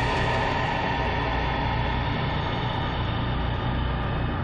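Sustained, steady low rumbling drone with faint held tones above it, its top end slowly fading: a dramatic background-score drone.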